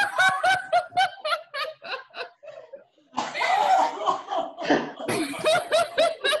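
Several women laughing on purpose during a laughter yoga exercise. It opens with a quick run of short 'ha ha' pulses, dips briefly about three seconds in, then several voices laugh over one another.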